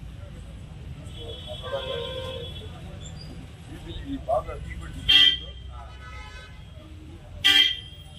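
Vehicle horns tooting: two short, loud honks about five and seven and a half seconds in, and a fainter, longer horn note near the start, over a steady low traffic rumble and voices.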